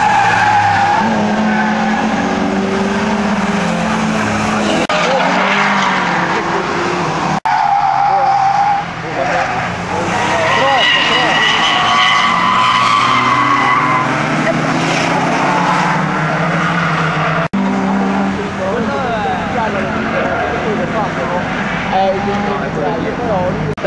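Cars lapping a racetrack at speed, engines running hard, with a long tyre squeal in the middle as a car slides sideways through a corner. The sound breaks off sharply twice where one pass gives way to another.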